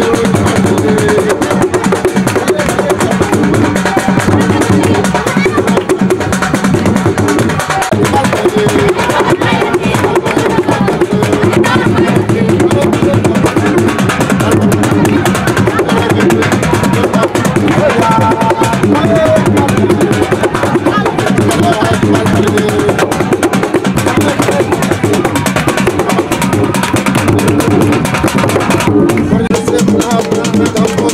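Loud, continuous drum-led dance music with voices, the drumming keeping a steady beat throughout, for a niiko dance.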